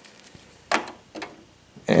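Brief handling sounds as memory modules are worked into the DIMM slots of a Dell PowerEdge 1900 server: a short, sudden scrape-like knock less than a second in, and a fainter one about half a second later.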